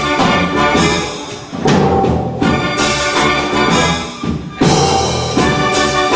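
Live pit orchestra playing instrumental music with brass and timpani. The music dips briefly twice and comes back in on loud accented chords, about two seconds in and again near five seconds.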